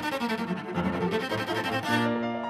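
Cello and Steinway grand piano playing classical chamber music together: the cello bowing against a busy piano part.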